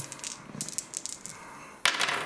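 Plastic gaming dice rattling and clicking on a tabletop as they are rolled and settle, a run of small light clicks followed by one sharper knock near the end.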